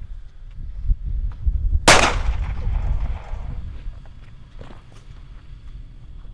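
A single gunshot about two seconds in, with a reverberating tail that fades over a second or so, over a low rumble.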